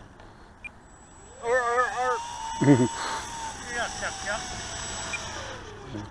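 Electric motor and propeller of an E-flite P-51 Mustang ASX radio-control plane whining as it taxis on grass. The pitch falls slowly over several seconds as the throttle comes down, with a faint steady high whistle above it.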